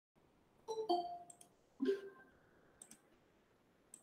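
A few sharp clicks and light knocks on something hard, several with a brief ringing tone after them: two close together just under a second in, another at about two seconds, and fainter small clicks in between and later.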